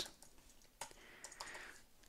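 Faint computer keyboard typing: a single keystroke a little under a second in, then a quick run of several keystrokes.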